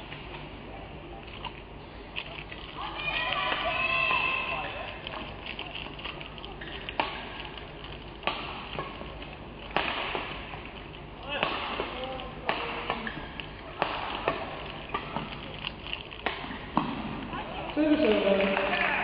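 Badminton rally: sharp racket strikes on a shuttlecock, about one a second, starting about seven seconds in. Before the rally, voices rise briefly over a steady arena murmur.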